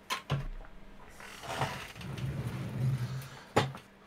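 Rustling, scraping and knocks as someone rolls back on a wheeled chair and picks up a small model terrain piece. There are two quick knocks at the start, a stretch of scraping through the middle, and the loudest knock comes near the end.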